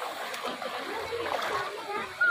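Shallow water splashing as children wade and kick through it, with voices chattering in the background.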